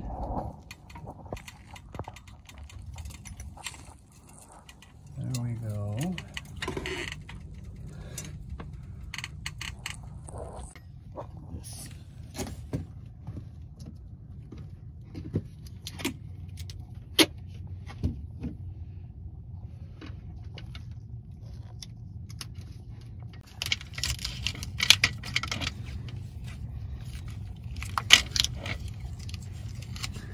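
Scattered metallic clinks and rattles of jack and tools over a steady low hum. Near the end come several crackling, tearing bursts: duct tape being pulled off the roll to tape a pad onto a floor jack.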